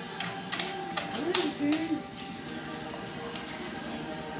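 A springer spaniel's claws clicking and scraping against a glass vase on a glass table, a few sharp taps in the first second and a half. A short rising-and-falling voice sound, like a murmur or whine, comes in the middle.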